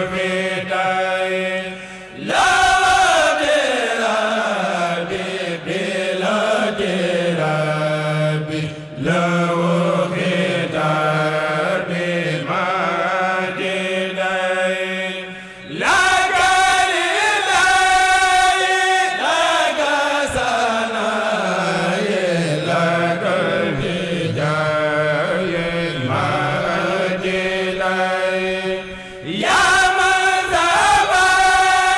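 A Mouride kurel, a group of men, chanting a khassida in unison in long melodic phrases that glide up and down, with short breaks between phrases and a steady low note held beneath parts of the chant.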